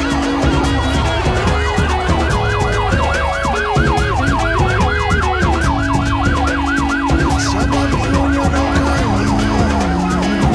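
Ambulance siren in a fast wailing yelp, about four rising-and-falling sweeps a second, starting a second or so in and fading near the end, over background music.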